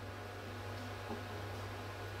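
Quiet room tone with a steady low hum and faint hiss.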